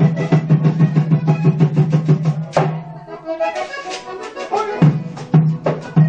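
Live vallenato played on a button accordion over a quick, steady percussion rhythm. About halfway through, the low accompaniment drops out for roughly two seconds, leaving only the upper notes, then comes back in.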